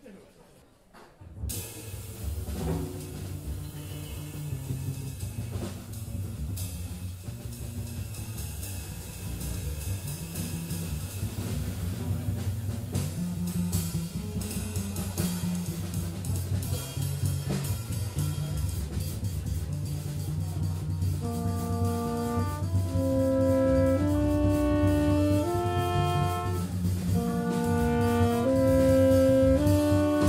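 A jazz quartet of tenor saxophone, trumpet, double bass and drums starting a free improvisation. After a second or so of quiet, bass and drums come in. About twenty seconds in, the saxophone and trumpet enter with long held notes that step from pitch to pitch, and the music grows steadily louder.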